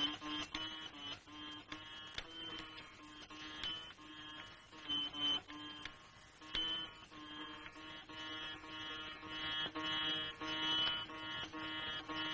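Veena played slowly: single plucked notes about every half second, each ringing on over a steady low drone note, growing a little fuller in the second half.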